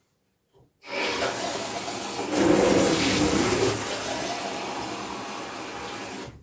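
A rush of running water. It starts about a second in, swells to its loudest a second or so later, then eases off to a steadier flow.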